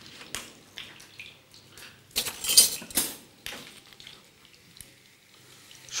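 Kitchen handling sounds of a spoon clinking and scraping against a small seasoning pot and a frying pan while salt and black pepper are spooned over diced chicken and onion. A few light clicks, then a louder clatter about two seconds in lasting about a second.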